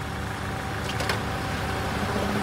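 Car engine idling at the curb with street traffic noise, and a couple of short clicks about a second in as the car's rear door is unlatched and opened.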